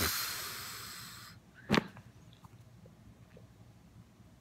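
A long breath blown out through pursed lips, fading away over about a second, then a single sharp click.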